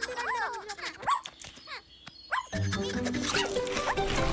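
A few short, squeaky cartoon puppy cries from an animated dalmatian, separated by brief pauses. Background music comes back in a little past halfway.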